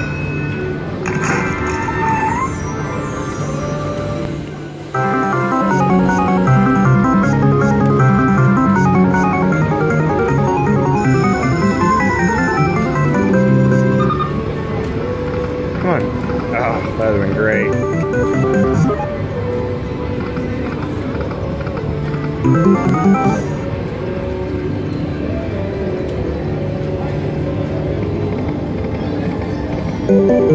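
Slot machine bonus-round music and spin jingles: an electronic melody of quick note runs with a few rising and falling sweeps. It gets louder about five seconds in and eases back down around the middle.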